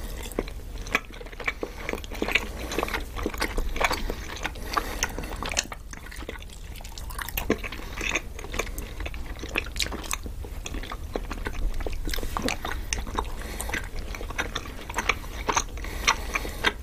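Close-miked biting and chewing of soft powdered mochi and macarons by two people, full of small, irregular mouth clicks and smacks.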